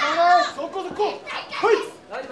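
Overlapping high-pitched shouts from the crowd and fighters' corners at a kickboxing bout, coming in quick bursts.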